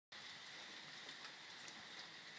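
Near silence: faint room hiss with a faint steady high whine and a few small ticks.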